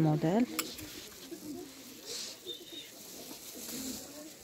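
A woman's voice trails off at the start, followed by a single sharp click of a clothes hanger on a rack rail about half a second in as garments are pushed along. Faint low sounds carry on underneath in a small room.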